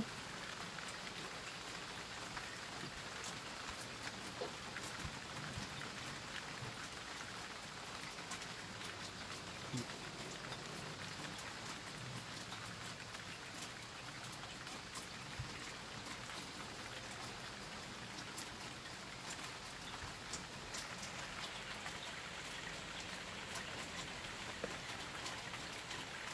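Steady thunderstorm rain: an even hiss with scattered ticks of single drops striking.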